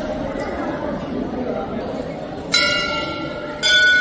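A temple bell struck twice, a little over a second apart, each strike ringing on, the second louder, over background chatter of voices.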